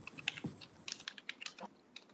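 Faint, irregular clicking of a computer keyboard being typed on over an open video-call microphone.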